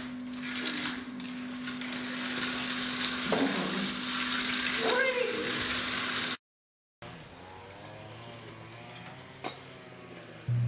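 Toy slot cars running on a plastic track: a steady electric whir with a couple of short voices over it. It cuts off suddenly about six seconds in, giving way to a much quieter steady background.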